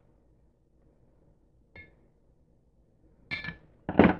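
Steel screwdriver shaft clinking against a glass mason jar as it pushes steel wool down into vinegar. A light ringing clink comes about two seconds in and a louder, sharper clatter near the end, with quiet in between.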